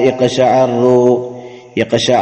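A man's voice chanting Arabic verb conjugation forms in a drawn-out, sing-song recitation, breaking off briefly about a second and a half in before resuming.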